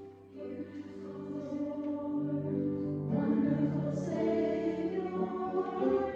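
A small mixed choir of men and women singing a worship song. The voices come in just after the start and grow fuller and louder about halfway through.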